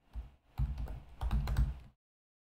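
Typing on a computer keyboard: a keystroke, a short pause, then a quick run of keystrokes lasting about a second and a half.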